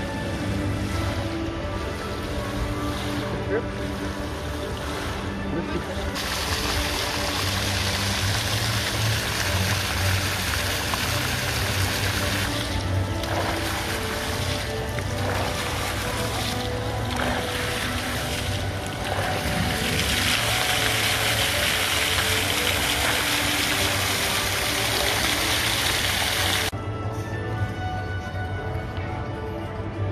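Fountain jets splashing into a pool, a steady rush of water that grows louder a few seconds in and stops abruptly near the end, with music playing throughout.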